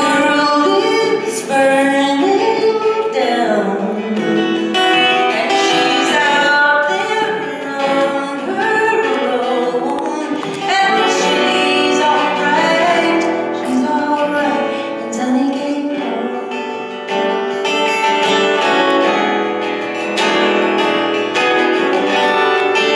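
Live solo song: a woman's voice singing over a strummed acoustic guitar.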